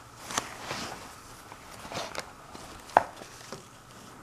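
Drawing paper being handled and turned on a table: a brief slide and rustle of the sheet, then a few light knocks and clicks, the sharpest about three seconds in.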